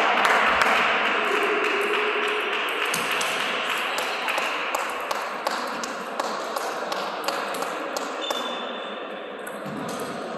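Table tennis ball clicking sharply off rackets and the table during a rally, many irregular clicks over a steadily fading haze of sports-hall noise.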